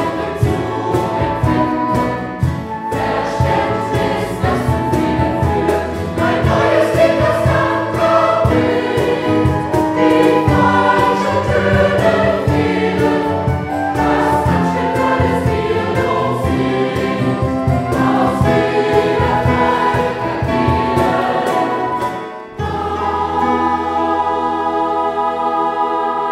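Large mixed choir singing a new sacred song in German, accompanied by a small band with flutes and guitar and a steady beat. About 22 seconds in the beat stops and the choir and band hold a long final chord.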